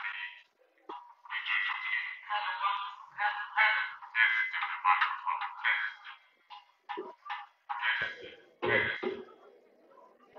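A person's voice, thin and tinny, speaking in short phrases with brief pauses. Near the end there is a fuller, lower-pitched voice sound.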